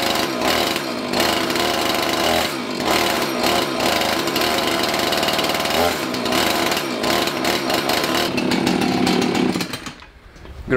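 Husqvarna two-stroke chainsaw engine running and being revved up and down. The bar is left loose so the chain can spin and wear off burrs on its drive links. Just before the end the engine note falls away and stops.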